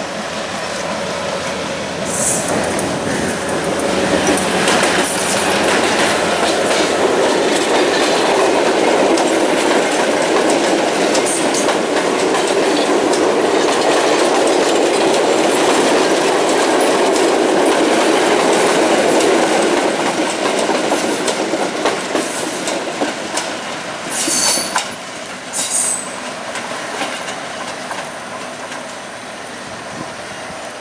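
A Sri Lanka Railways passenger train of coaches rolling past, wheels clattering over the rail joints in a steady rumble that builds, holds and then fades as the train draws away. A few brief high-pitched wheel squeals cut in near the start and again towards the end, as the coaches take the curve.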